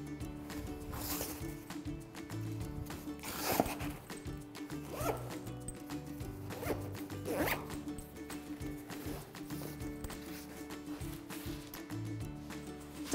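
Zipper on a fabric backpack being pulled in several short runs, over soft background music.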